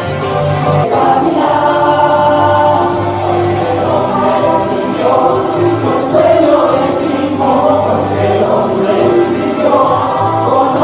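A Christian song sung by several voices together, with instrumental backing.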